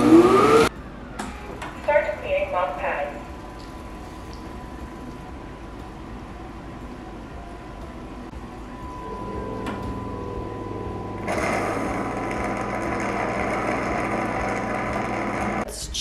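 Dreame L10s Ultra base station emptying the docked robot vacuum: its auto-empty suction motor starts with a building hum about nine seconds in, runs loud and steady from about eleven seconds, and stops just before the end.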